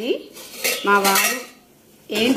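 Metal kitchen utensils clinking and scraping against a dish, with a brief ringing, squeal-like tone a little before the middle that dies away toward the end.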